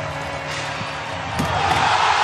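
Basketball arena game sound: a sharp slam about a second and a half in as a dunk hits the rim, then the crowd's roar swells up.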